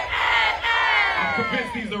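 Large concert crowd yelling and cheering, many voices at once, sliding down in pitch together through the middle of the moment.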